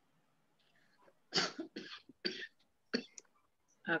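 A run of several short coughs, each starting sharply and dying away quickly, faint over a video-call line.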